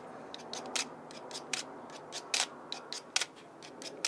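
Pieces of magazine paper being handled in gloved hands, making a string of short, crisp, irregular crackles and rustles.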